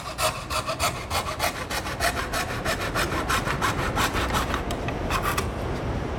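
Magic Saw hand saw's rod blade cutting a curve through a bamboo pole: quick, even back-and-forth strokes, about five a second, with a rasping scrape, stopping shortly before the end.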